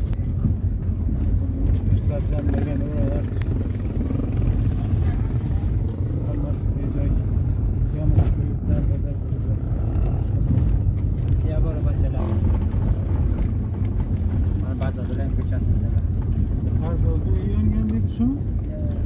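A car driving on a dirt road, heard from inside the cabin: a steady low rumble of engine and tyre noise that runs on without a break.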